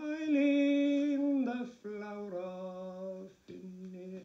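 An unaccompanied man singing the closing line of an Irish ballad in slow, long-held notes, the first held for about a second and a half, then settling onto lower notes.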